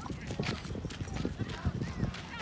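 Footsteps on a dry dirt path, a quick run of irregular steps, with indistinct voices of people around.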